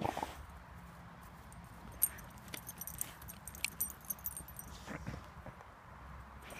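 Small dog digging into a mouse burrow with its front paws, irregular scratching and scraping of dry, stony soil, with light jingling from its harness. A brief louder sound at the very start and another about five seconds in.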